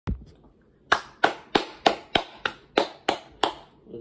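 Hand clapping: about nine sharp claps in a steady rhythm, roughly three a second, starting about a second in. A single short click comes at the very start.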